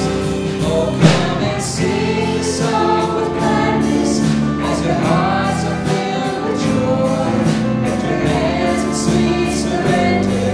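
Live worship band playing a song: several voices singing together over piano, banjo, electric bass and drums, with a steady beat of about two drum and cymbal strikes a second.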